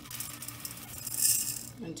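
Dry long-grain rice pouring from a glass measuring cup into a metal rice-steamer pot, a steady hissing patter of grains landing on rice. It swells about midway and tails off near the end as the cup empties.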